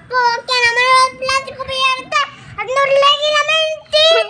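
A young boy's voice holding two long sung notes, the second a little higher, with a short break about two seconds in.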